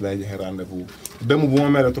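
A man's voice speaking in Wolof, ending in one drawn-out syllable that rises and falls gently.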